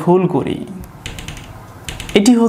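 Marker pen tapping and writing on a whiteboard, heard as a few short, sharp clicks in the middle. A man's voice is heard briefly at the start.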